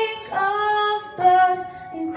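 A girl singing solo into a microphone while accompanying herself on a grand piano: three held notes with short breaks between them.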